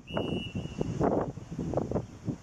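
Gusty wind buffeting the camera microphone, with a short, steady high whistle tone lasting about a second near the start.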